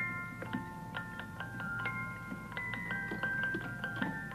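Music box tune playing from a clockwork doll automaton: a steady run of small plucked metal notes that ring on and overlap, over a faint low hum.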